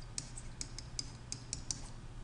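Plastic stylus tip tapping and scratching on a tablet's writing surface as a word is handwritten: short, sharp, irregular clicks, about four or five a second, over a steady low electrical hum.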